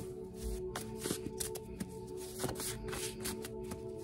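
Handwritten index cards shuffled by hand, a string of short papery riffles and slaps, over steady background music.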